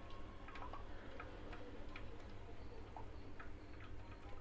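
Coconut milk dripping from a strainer of ground coconut into a steel vessel below: faint, irregular small ticks, a few each second, over a low steady hum.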